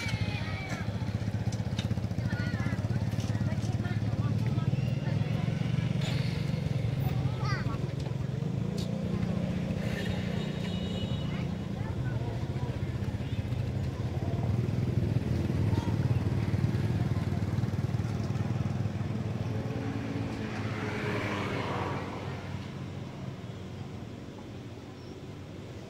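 A motor engine running steadily with a low hum that eases off near the end, with brief higher squeaks over it.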